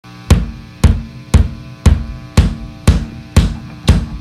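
Drum kit struck eight times at an even pace, about two hits a second, over a steady low tone: the drum intro of a hardcore punk demo song, just before the full band comes in.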